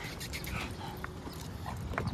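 Two dogs' paws and claws scuffing and clicking lightly on asphalt as they move around each other on leashes, over a low steady rumble.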